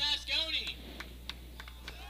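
A raised voice calls out for about half a second from across the ballfield, then a few scattered light clicks follow over a low steady hum.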